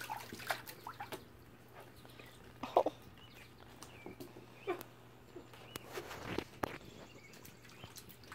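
Faint scattered clicks and taps of a wet puppy's claws on a wooden deck, over a steady low hum.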